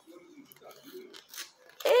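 Quiet room with faint rustles and a light tap from hands handling the paper pages of a picture book. A woman's voice exclaims 'Ei!' at the very end.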